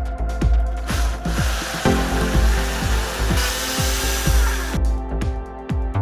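A drill boring a hole through the centre of a wine cork: a steady noise that starts about a second in, grows brighter a little past halfway, and stops near the five-second mark.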